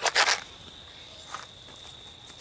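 A small loose pile of Swiss 3Fg black powder flashing off as a lit match lands on it: one short, sudden whoosh near the start, the powder going "woof" rather than burning slowly like smokeless powder.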